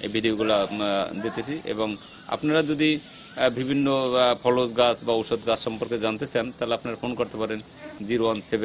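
Steady high-pitched insect chorus droning behind a man talking, with the voice as the loudest sound.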